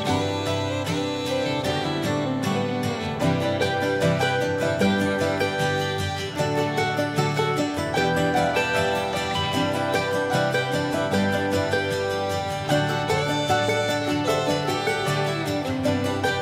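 Background music of quickly picked acoustic strings with a steady beat.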